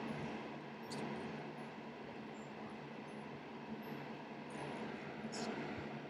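Horror TV trailer soundtrack playing back: a low steady drone, with brief hisses about a second in and again near the end.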